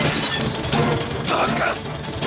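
A sudden shattering crash at the start, over dramatic film score music.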